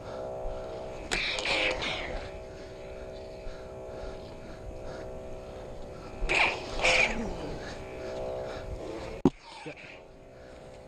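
Combat lightsabers' sound boards humming with a steady drone. Two louder swing or clash effects come about a second in and again around six to seven seconds, and a sharp click sounds near the end.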